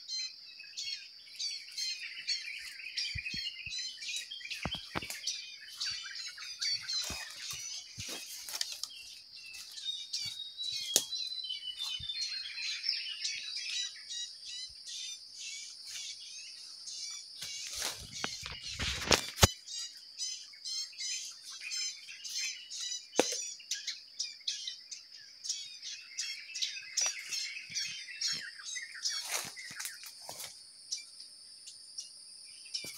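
Young bar-winged prinias chirping rapidly and repeatedly, over a steady high-pitched insect drone. There are a few light knocks, and a brief loud rustle comes about two-thirds of the way through.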